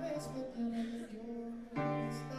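Live band playing a slow, sustained passage of held chords, with a new chord struck near the end.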